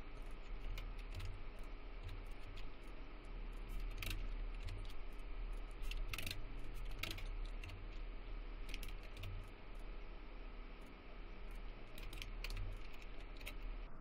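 Scattered, irregular clicks of a computer keyboard and mouse over a low, steady electrical hum.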